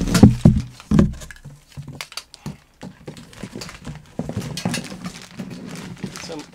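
Cardboard box being handled and rummaged through: heavy thumps on the cardboard in the first second, then a busy run of clicks and knocks as tangled cables and connectors are lifted out and rattle against each other.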